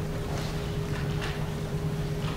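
Chalk scratching and tapping on a chalkboard in a few short strokes, over a steady low hum with a faint constant tone underneath.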